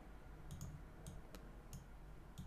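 A handful of faint, scattered computer mouse button clicks over a faint low hum.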